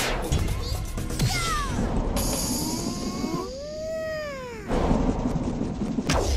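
Cartoon soundtrack music with comic sound effects: several sliding pitch glides, ending in one long rising-then-falling glide around the middle, over low thumps and rumble.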